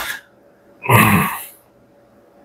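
A man makes one short, breathy vocal sound about a second in, lasting about half a second.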